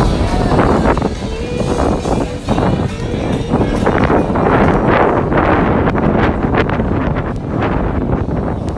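Wind buffeting the microphone in gusts, a heavy rumble, with background music and voices faint beneath it.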